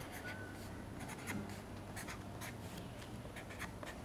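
Marker pen writing numbers on white card: a faint run of short, quick pen strokes.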